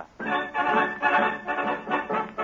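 A radio studio orchestra plays the opening introduction to a song, with full held chords. It starts a moment after the announcer's last word.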